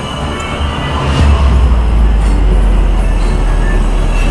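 Loud low rumble that swells about a second in and then holds steady, with faint background music over it.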